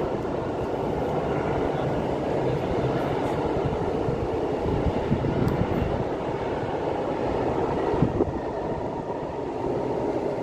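Freight train of tank wagons rolling past: a steady rumble of wheels on rail, with a couple of sharp knocks, the loudest about eight seconds in.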